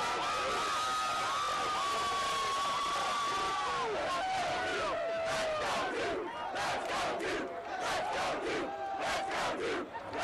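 A large crowd of college students screaming and cheering, with long held yells. About halfway through it breaks into a rhythmic chant of evenly spaced shouts.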